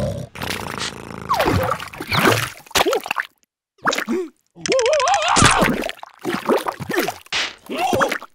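Cartoon larva characters vocalizing in gibberish: wobbly, pitch-sliding squeaks, grunts and babble in short spurts, with a break of near silence about three and a half seconds in.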